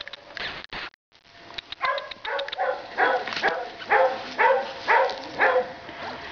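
A dog whining in a run of short, slightly falling cries, about two a second, starting about two seconds in.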